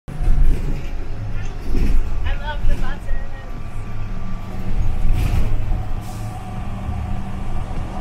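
Interior of a moving city bus: the engine's steady low drone and road rumble. A person's voice is briefly heard about two to three seconds in.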